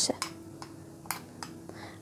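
A few faint, separate clicks of a kitchen utensil against a bowl, over a low steady hum.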